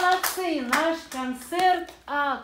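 Hands clapping that stops just after the start, followed by several short calls from voices, each rising and falling in pitch.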